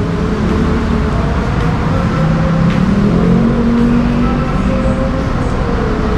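Steady rumble of road traffic, with a vehicle engine's drone running through it.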